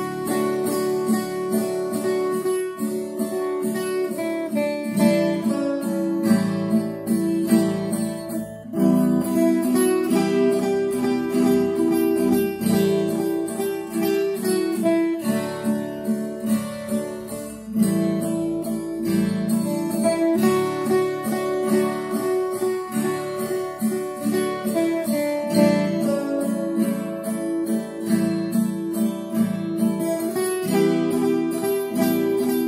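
A ten-string Brazilian viola caipira plays the verse of a gospel tune in D major. A steady strummed accompaniment on D, A7 and Em, with each beat's three downstrokes made by the thumb and then the back of the hand twice, runs under a plucked single-note melody.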